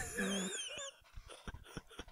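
A high-pitched, wavering squeal of laughter lasting about a second, then a few short clicks and breathy catches of laughter.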